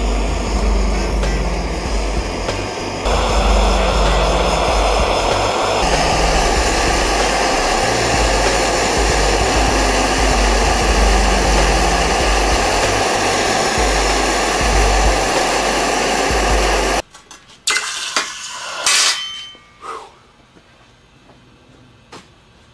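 Handheld gas torch running steadily as it melts gold and flux in a crucible, under background music. About three-quarters of the way in, both cut off abruptly, leaving a few brief, faint sounds.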